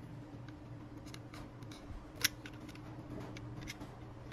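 Utility knife blade scraping and cutting the plastic jacket of a coaxial cable: a run of soft scrapes and small clicks, with one sharper click a little past halfway.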